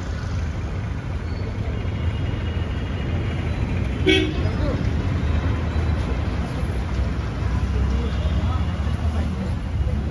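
Steady low rumble of street traffic, with a short vehicle horn toot about four seconds in.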